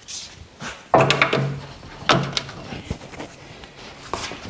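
Hydraulic quick-connect hose couplers being pushed and snapped onto a compact tractor's loader hydraulic outlets: a series of sharp metal clicks and clunks, the loudest about one second in and again about two seconds in.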